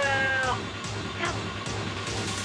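A man's scream, rising in pitch and held for about half a second at the start before breaking off, over a droning horror film score that carries on beneath.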